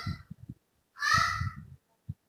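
A single harsh bird call about a second in, lasting under a second.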